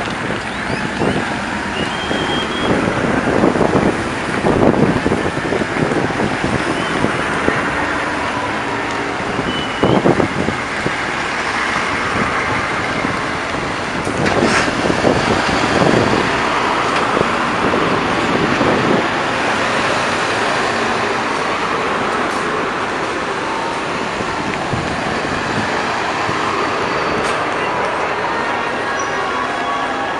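A military convoy of Humvees and cargo trucks driving past, a steady mix of engines and tyre noise that swells several times as vehicles pass close by.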